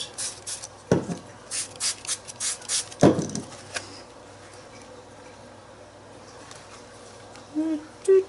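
Handling of a hard-backed art journal on a clipboard being tilted on a tabletop: a few short crisp scrapes and two dull knocks about two seconds apart.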